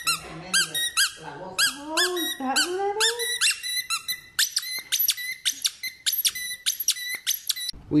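Squeaker inside a small plush stingray toy squeezed over and over: a quick, even run of high squeaks, each rising and falling in pitch, getting faster partway through and stopping just before the end.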